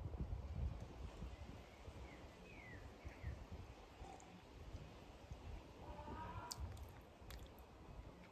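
Quiet outdoor background with a low, steady rumble, and a few faint bird chirps about two to three seconds in.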